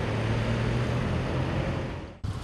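Street traffic: a passing car's engine and tyres, a steady low hum over road noise.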